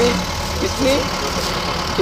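A vehicle engine running with a steady low hum and rumble. A man's voice speaks briefly under it.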